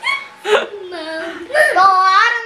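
A woman and young children laughing and vocalizing, with short high-pitched bursts and then a longer laugh from about one and a half seconds in.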